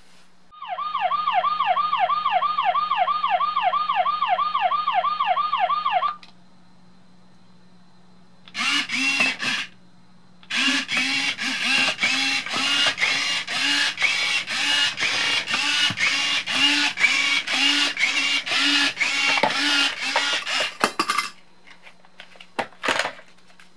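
A remote-controlled Robocar Poli toy's electronic siren wailing quickly, about three to four wails a second, for several seconds. Then the toy gives a short burst and a long run of rapid, evenly spaced electronic beeping sound effects from its small speaker, over a steady low hum.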